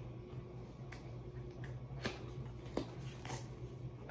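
Small cardboard palette box being worked open and torn by hand: a few sharp clicks and short tearing rustles, mostly in the second half, over a steady low hum.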